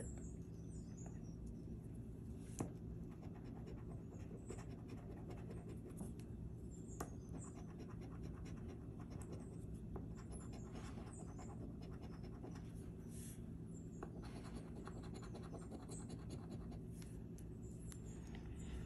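A coin scraping the scratch-off coating from a paper lottery ticket: faint, irregular scratching strokes with a small click about two and a half seconds in. The coating is stiff and hard to scratch.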